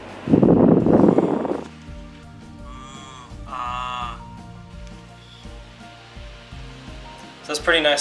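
A COMLIFE F-150 battery mini fan's airflow blowing straight into the microphone, a loud rushing buffet lasting about a second and a half near the start. After that, background music with held notes.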